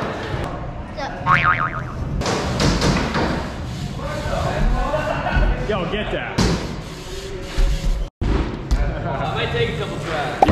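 Indistinct voices mixed with background music, broken by a brief drop-out about eight seconds in.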